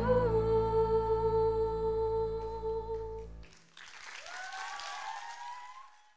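A female voice holds a long final sung note over a backing track with a low bass, and both stop about three and a half seconds in. A brief, fainter wash of noise with a few rising tones follows near the end.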